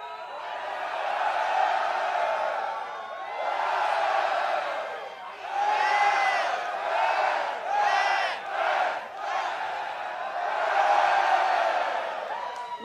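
Large concert crowd shouting and cheering together, many voices rising in loud waves every couple of seconds.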